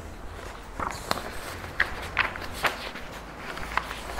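Quiet, irregular footsteps on a hard floor, a few scattered steps and taps.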